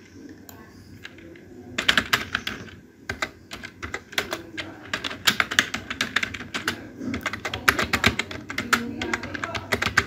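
Computer keyboard typing in quick runs of keystrokes, starting about two seconds in, with a short pause near three seconds.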